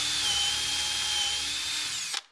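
Porter-Cable cordless drill running at speed, boring a louver hole into a wooden shutter rail through a plastic drilling template with a depth-stopped bit. A steady high-pitched whine.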